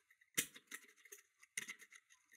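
Faint metallic clicks and ticks from a pick lifting the spring-loaded levers inside a 5-lever mortice lock held under tension, with a sharper click about half a second in and a small cluster of clicks past the middle. The levers are springing back down instead of binding, so nothing sets.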